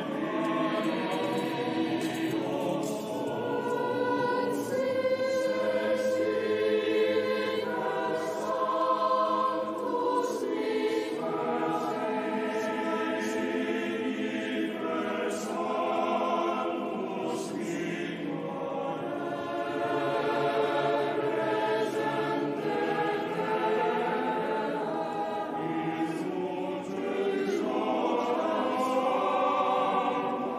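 A choir singing a slow sacred chant during the offertory of a Mass, its notes held for a second or two each.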